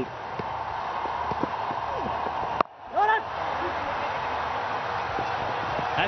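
Steady background noise of a televised cricket match with no commentary, broken off by an abrupt edit cut about two and a half seconds in. A brief shouted voice rises just after the cut before the steady noise resumes.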